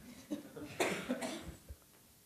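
A person coughing once, a short burst a little under a second in.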